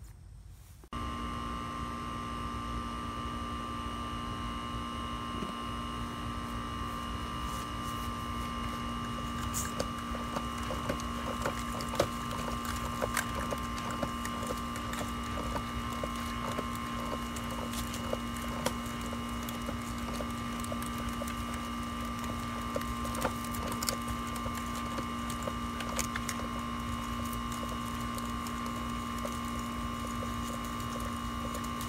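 Plastic hose reel cart being hand-cranked, winding a metal-jacketed garden hose onto its drum, with scattered small clicks and knocks. A steady hum runs underneath from about a second in.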